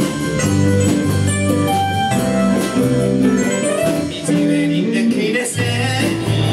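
A live band playing a pop song, with keyboard and guitar chords over a bass line. The bass drops out briefly about four seconds in and comes back near the end.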